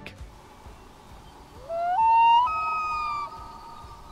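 A loon calling, the loudest sound here: one long wail that starts about a second and a half in, glides upward, steps twice to higher notes, then holds its top note briefly before it stops. Faint background music runs under it.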